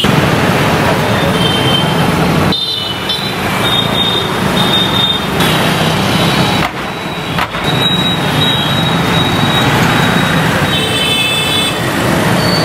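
Road traffic at a city junction: cars, motorbikes and a truck driving past, with short vehicle horn toots sounding now and then.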